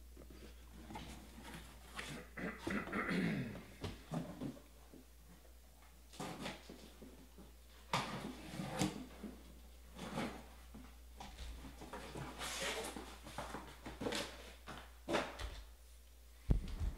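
Faint, irregular rustling and clicking of shrink-wrapped card boxes and their cardboard case being handled, with a few sharper clicks every second or two.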